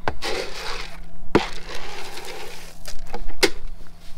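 Rummaging inside a plastic barrel of dry feed: rustling of the feed with several sharp knocks against the barrel, the loudest about a second and a half in and again near the end.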